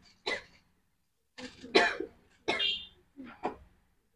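Marker pen writing on a whiteboard: a series of short squeaks and scrapes, one for each written stroke, some with a high squealing tone.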